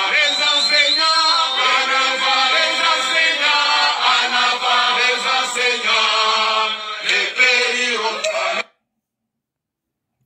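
A crowd of people singing a chant together, many voices at once; it cuts off abruptly near the end.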